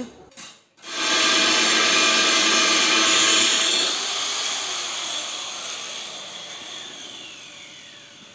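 Handheld electric angle grinder running at full speed with a steady motor whine, then switched off about four seconds in and winding down, its pitch falling and the sound fading. A couple of sharp knocks come before it starts.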